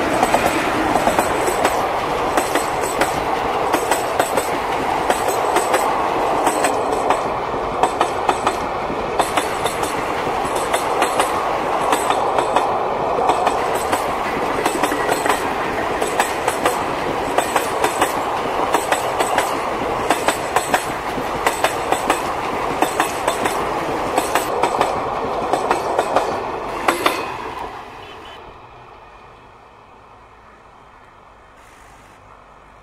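Indian Railways passenger express passing close by, its WAG-7 electric locomotive followed by a long rake of sleeper coaches. The wheels click over the rail joints in a steady, regular clickety-clack over the loud rolling noise. The noise falls away sharply near the end.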